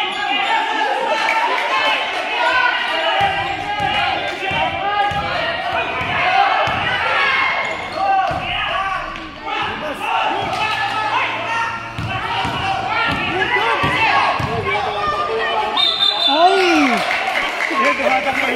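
A basketball being dribbled and bouncing on an indoor court, with players and spectators talking throughout. A short high whistle blast sounds near the end.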